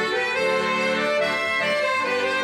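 Accordion playing an instrumental folk tune, sustained chords under a melody, steady in level.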